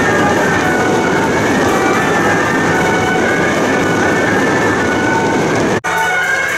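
Loud beiguan processional music: suona horns wailing over dense clattering percussion. It breaks off sharply just before the end.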